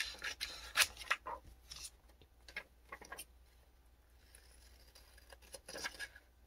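Scissors snipping through a thin book page: a run of quick cuts over the first few seconds, a pause, then a few more snips near the end.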